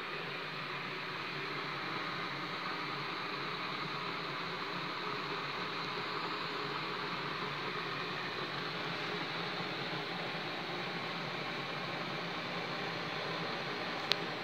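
Electric kettle heating water: a steady hiss that builds a little over the first couple of seconds and then holds even. A single sharp click comes right at the end.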